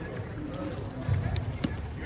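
A basketball bouncing on an indoor court floor, a few dull thuds from about a second in, with players' voices in the background.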